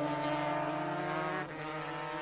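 Two-stroke 250cc Grand Prix racing motorcycle engine held at high revs, keeping a steady note; the sound dips slightly about one and a half seconds in.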